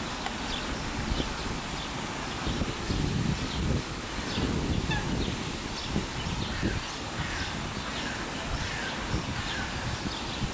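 Eurasian coot chicks peeping: short, high calls repeated over and over. A louder low rumbling noise swells in the middle.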